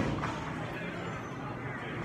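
Indistinct background chatter and steady room noise of a busy game room, with no clear impact or ball click.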